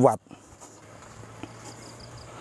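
Insects chirring steadily, a faint high-pitched drone, with a faint low hum beneath it.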